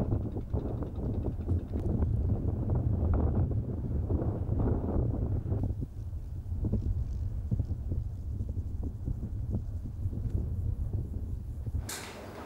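Wind buffeting the microphone outdoors: a loud, gusty low rumble that eases a little about six seconds in.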